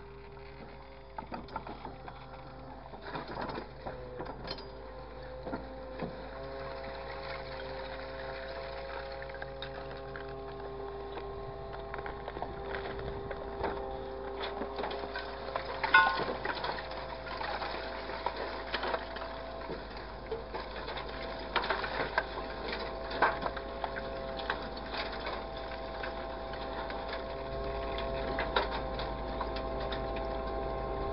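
Grapple excavator at work: its engine and hydraulics give a steady whine of several tones that shifts slightly in pitch around ten seconds in. Scattered knocks and clanks from the boom and grapple come on top, the sharpest about sixteen seconds in.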